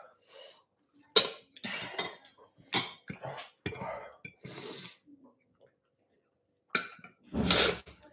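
Eating sounds: a metal fork clinking against a dish several times, mixed with short, sharp breaths from someone burning from very spicy food. A louder burst of breath comes near the end.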